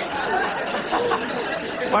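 Studio audience laughing, many voices at once at a steady level, with a single man's voice beginning to speak right at the end.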